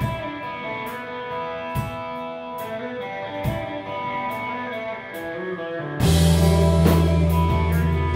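Live rock band: an electric guitar plays a sparse, ringing part over light, evenly spaced percussion hits, then about six seconds in the full band comes in much louder with bass guitar and drums.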